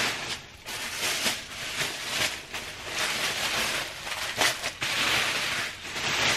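Gift bags and wrapping rustling and crinkling as they are handled, swelling and fading unevenly with a few sharper crackles.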